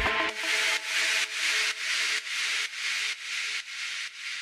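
Outro of a progressive house track: the kick drum stops just after the start, leaving a hissing wash of noise that pulses with the beat, about twice a second, over faint held synth chords, all gradually fading out.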